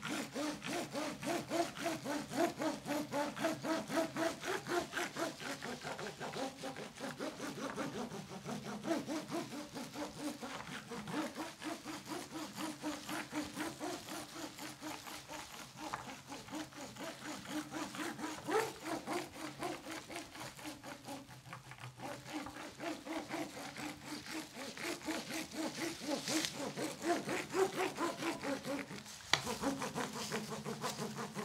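Ribbed metal paddle roller rolled back and forth over wet resin-soaked fibreglass. It makes a steady rubbing stroke that repeats several times a second as it consolidates the two layers and presses the air out.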